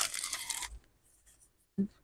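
Clear plastic packaging crinkling briefly as paper pieces are slid out of it, stopping after under a second.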